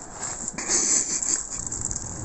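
Wheeled suitcase being pulled over brick paving, its wheels rumbling and clattering; the rumble gets louder about half a second in.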